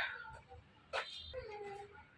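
A faint animal call about half a second long, coming shortly after a brief sharp click about a second in.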